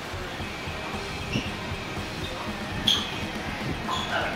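Tennis balls struck by rackets in a doubles rally: a few sharp pops about a second and a half apart, the loudest about three seconds in.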